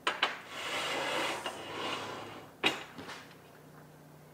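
A large aluminum plate set down on an aluminum extrusion frame: a clank as it lands, then a couple of seconds of scraping metal on metal as it is slid into position, and a sharp knock as it settles near the end.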